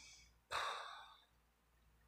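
A woman sighing in frustration after a makeup mistake: one short, breathy exhale about half a second in.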